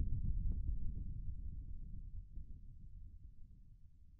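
Deep, low rumble of an explosion sound effect dying away, fading steadily toward silence.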